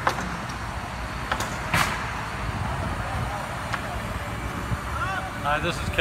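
Outdoor ambience at a house-framing construction site: a steady low rumble with a few sharp knocks scattered through it. A man's voice begins near the end.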